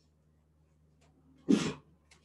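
A single short, sharp burst of breath from a person, a sneeze-like snort about one and a half seconds in, after near silence.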